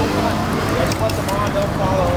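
Indistinct voices talking over steady loud background noise.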